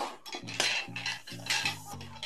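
Thin steel wire and pliers clinking and scraping as the wire is bent and worked around nails, giving a run of sharp metallic clicks.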